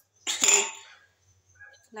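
A woman's single short cough, sudden and loud, about half a second in, fading within half a second.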